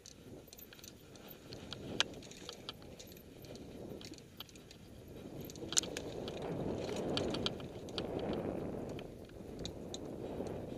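Mountain bike riding down a dirt trail: a steady rumble of tyres on dirt that builds through the second half, with frequent sharp clicks and rattles from the bike, the sharpest about two seconds in and near six seconds.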